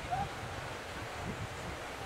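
Steady outdoor wind noise buffeting the microphone, with a low rumble, and one brief distant call near the start.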